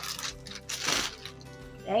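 Small plastic storage containers and plastic bags clicking and rustling as a hand rummages through them in a plastic tub, with a louder crinkling rustle about a second in, over steady background music.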